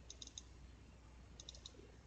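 Faint computer mouse clicks over near-silent room tone: two quick clusters of a few clicks each, one near the start and one about a second and a half in, the sound of double-clicking through folders.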